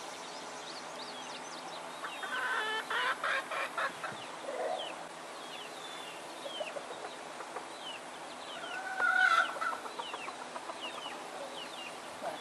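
Chickens clucking: a quick run of clucks about two to four seconds in, and a louder, longer call about nine seconds in.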